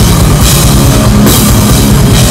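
Crust/hardcore metal band playing live at full volume: fast, pounding drums under distorted guitars, with cymbal crashes twice.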